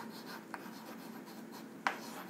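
Chalk writing on a chalkboard: faint scratching as the letters of a chemical formula are written, with two sharp taps of the chalk on the board, a soft one about half a second in and a louder one near the end.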